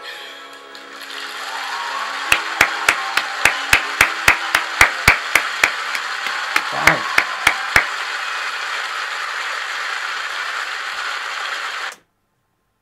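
The last notes of a live song fade, then a concert audience applauds steadily. Over it, a person close to the microphone claps his hands sharply about three times a second for several seconds, with a short pause midway. Everything cuts off abruptly at the end.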